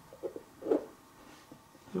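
Quiet room tone in a small room, with one short wordless vocal sound about two-thirds of a second in.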